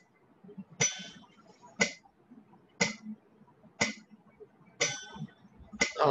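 Metronome ticking at 60 beats per minute: six evenly spaced ticks about a second apart, with the first and fifth brighter, accenting every fourth beat.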